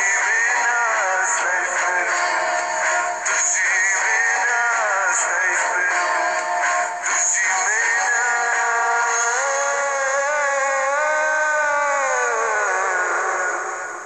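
A man singing a melodic song over music, the voice carried by a wavering vibrato. From about ten seconds in he holds one long note that slides downward near the end.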